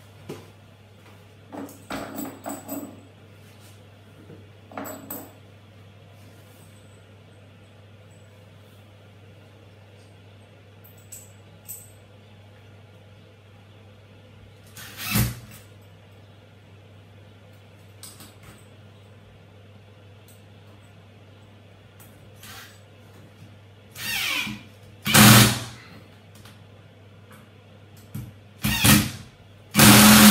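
Cordless screwdriver driving screws into wall plugs in short spurts. The loudest spurts come in the last several seconds, with lighter knocks before them. The driver is one the user finds too weak, so the screws go in slowly.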